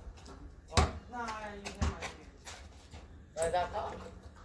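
A basketball hitting hard twice, about a second apart, as it comes off the hoop and bounces on concrete. Short shouted exclamations come between the hits and again near the end.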